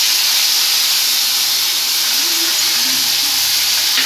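Onion paste sizzling in hot mustard oil in a wok, just dropped in: a loud, steady hiss.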